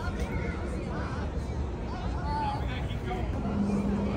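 Faint, unclear voices of people talking over a steady low rumble of city street noise. A short steady hum comes in near the end.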